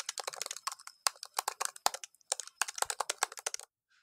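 Fast typing on a MacBook laptop keyboard: quick runs of key clicks broken by two short pauses, about one and two seconds in, stopping shortly before the end.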